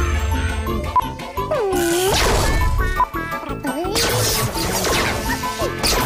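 Several cartoon end-credits theme tunes playing over one another at once, a dense jumble of music with jingling. Swooping slides in pitch and a couple of sharp hits cut through it.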